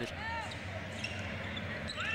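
Basketball arena ambience: steady crowd murmur under a brief, high squeak of a sneaker on the hardwood court about a quarter-second in.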